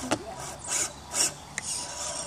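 Short rasping scrapes as the rubber tyres of a Losi Night Crawler RC rock crawler scrabble against the cut wood and bark of a tree stump: a sharp click at the start, then two loud scrapes about three-quarters of a second and a second and a quarter in, and a weaker one near the end.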